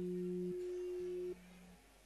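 Campursari band's electronic keyboard playing a few long, pure-sounding notes, a low note and a higher note held together. The sound drops away in the second half, before the next phrase.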